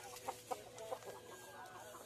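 Chickens clucking quietly in a few short, soft calls, with some faint clicks in between.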